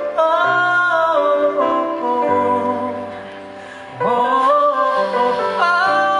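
Live music: a singer holding long sung notes over acoustic guitar, the second long note starting about four seconds in after a softer passage.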